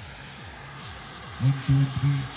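Distant jet aircraft, a steady faint rushing in the sky, with a man's voice cutting in near the end.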